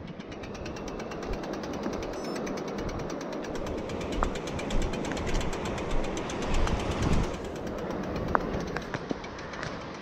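Mountain bike coasting slowly on pavement, its freewheel hub ticking in a rapid, even stream of clicks, with a low rumble of wind and tyre noise underneath.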